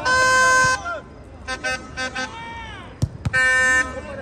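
Horn blasts: a loud one-note horn held for about three-quarters of a second at the start, a few short toots and a tone that slides down in pitch in the middle, and another loud blast of about half a second near the end, over spectators' voices.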